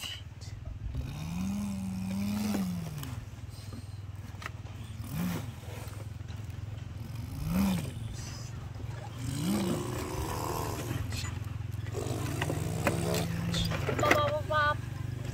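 A person imitating a truck engine with their voice: a steady low drone that swoops up and back down in pitch several times, like revving.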